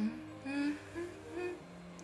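A woman humming a few short notes with her mouth closed, over quiet background music.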